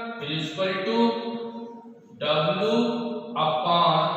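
A man's voice in long, drawn-out, chant-like phrases: about three phrases with held notes, each a second or more long, broken by short pauses.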